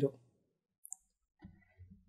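Two short, faint clicks just under a second apart-from-nothing pause, close together, after the end of a spoken word; faint low murmurs follow near the end.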